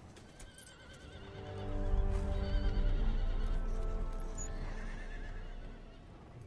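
Horses whinnying with a wavering pitch over orchestral film music; a deep rumble swells about a second and a half in and eases off toward the end.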